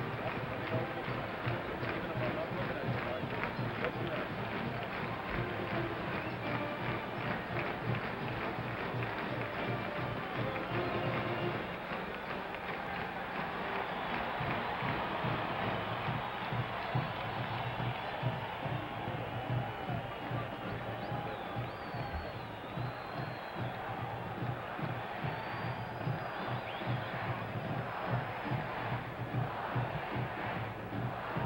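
A marching band playing in a stadium, over the continuous noise of a large crowd.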